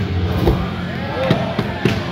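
Skateboard wheels rolling across a wooden mini ramp, a steady low rumble with several sharp clacks from the board on the ramp and coping.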